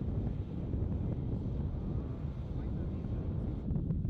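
Wind buffeting an outdoor microphone, a steady low rumble, with indistinct talking underneath.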